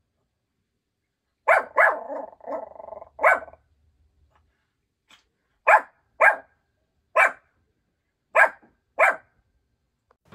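Small Yorkshire terrier giving alert barks at something outside the door: short, sharp yaps, first a quick cluster with softer growly sounds between, then five single barks spaced about half a second to a second apart.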